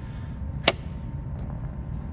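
A steady low hum with one sharp click about two-thirds of a second in, followed by a couple of faint ticks.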